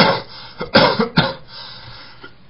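A man coughing: a sharp burst at the start, then three shorter coughs close together around the one-second mark.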